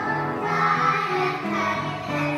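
A group of children singing a song together in held notes, with a woman's voice singing along among them.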